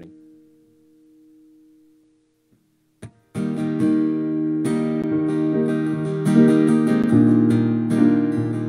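A held chord fades out over about two and a half seconds. After a brief hush and a click, an acoustic guitar starts strumming the opening of a worship song and keeps going steadily and loudly.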